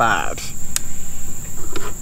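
Steady high-pitched drone of insects in the woods, with a brief voice sound at the start and a single light click about three-quarters of a second in.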